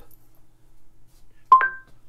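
Google Home smart speaker sounding a short electronic chime about one and a half seconds in: two quick notes, the second higher than the first.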